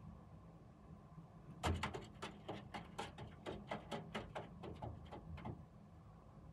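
A run of about fifteen sharp knocks or clacks, a few a second, starting a little under two seconds in and stopping shortly before the end, the first the loudest; a faint low hum of traffic goes on underneath.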